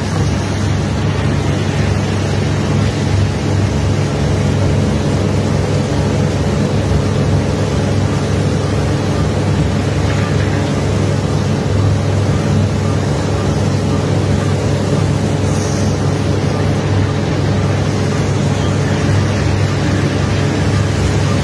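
Barge machinery running steadily: an even low engine drone with a constant rushing hiss over it, unchanging throughout.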